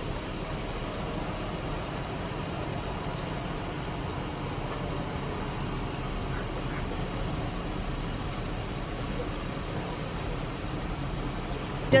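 Steady outdoor background noise: an even, featureless hiss with no distinct events.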